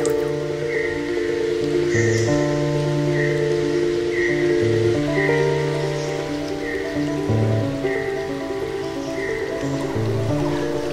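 Background music of soft, sustained chords that shift every couple of seconds, with a short high note repeating about once a second.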